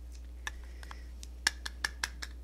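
Light, sharp clicks and taps from a plastic bronzer compact and makeup brush being handled, about five in all, the loudest about halfway through and the rest in quick succession near the end.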